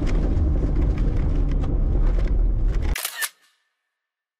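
Off-road vehicle driving on a sand dune, heard from a hood-mounted camera: a loud, irregular rumble of engine, tyres on sand and wind on the microphone, with scattered crackles. It breaks off in a brief burst of clicks about three seconds in and cuts to silence.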